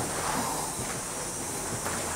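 Footsteps on a bare concrete slab floor in an empty, unfinished house, soft and irregular, over a steady hiss.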